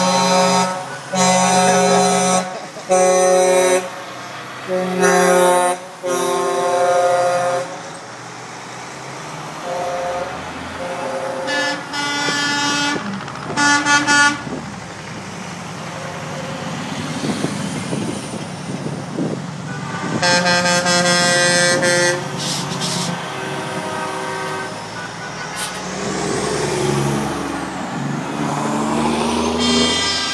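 Big-rig air horns blasting as semi trucks drive past, with the diesel engines running between blasts. Five loud chord blasts come in quick succession, then shorter toots, and one long blast about two-thirds of the way through.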